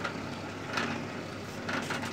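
Vertical continuous band sealer running with a steady motor hum as its conveyor belt moves. Two short bursts of noise come about a second apart, one just before the middle and one near the end.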